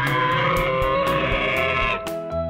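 Dinosaur call sound effect, one long wavering call, over backing guitar music. It stops abruptly at the end.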